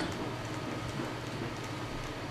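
Room tone of a large hall: a steady low hum and hiss, with a few faint light ticks.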